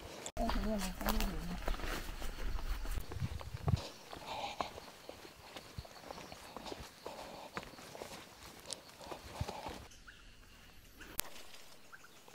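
Footsteps walking along a dirt path through undergrowth: a run of light, irregular steps brushing leaves. A faint voice is heard in the first couple of seconds.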